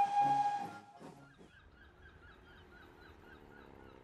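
A children's group song with backing music ends about a second in. Faint outdoor background follows, with small chirps repeating evenly about four times a second.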